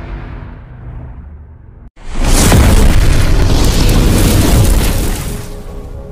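Explosion sound effect: a fading rumbling whoosh, a brief cut to silence about two seconds in, then a loud fiery boom with a heavy low rumble lasting about three seconds before dying away near the end.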